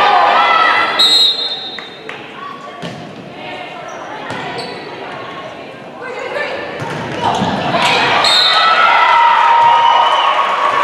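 Volleyball rally in a gym: a few sharp ball hits in a quieter middle stretch, between loud stretches of shouting and cheering from players and spectators that rise again in the last few seconds. The hall echoes.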